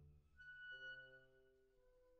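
Faint, sparse ensemble music: a few long held instrumental notes overlapping. A high note comes in about half a second in, and the lower notes shift to a new set just after.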